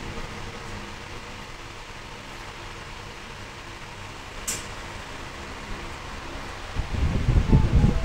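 Steady room hum like a running fan, with one sharp click about four and a half seconds in. Near the end, loud, irregular low rumbles and thumps come in.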